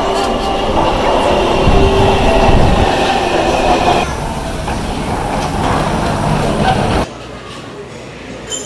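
Metro train at the platform, a steady rumble with a high whine running through it, for the first half. Then a cut to busy station-exit ambience with murmuring voices, and about seven seconds in a drop to a much quieter room.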